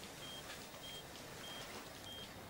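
Patient monitor beeping its pulse tone: short, high, identical beeps, evenly spaced about two thirds of a second apart. Three beeps are heard, faint under a low background hiss.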